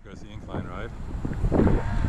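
Indistinct voices of other people talking, over a low rumble of wind on the microphone.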